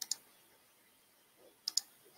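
Computer mouse button clicking twice, each a quick press-and-release pair of clicks: one at the start, one near the end.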